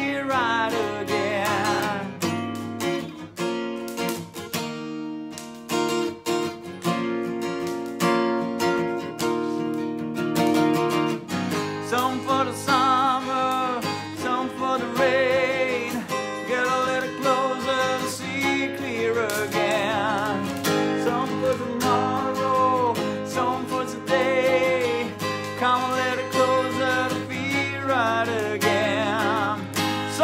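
Acoustic guitar strummed under a man's singing voice, which holds long notes with vibrato. The voice drops out about two seconds in, leaving the guitar on its own, and comes back about twelve seconds in.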